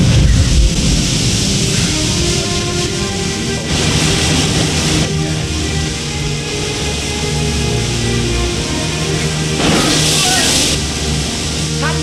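Dramatic film score with held notes, over a low boom right at the start and two surges of rushing water, about four seconds in and near the end.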